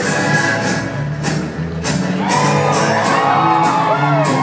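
Newfoundland folk-rock band playing live on drums, bass and guitars with a steady beat. High whoops and shouts rise out of the music in the second half.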